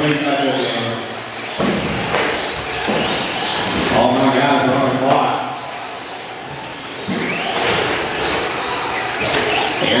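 Electric RC short-course trucks (Traxxas Slash, stock class) racing on indoor carpet, their motors whining up and down in pitch as they accelerate and brake, mixed with a voice over a loudspeaker in a large echoing hall.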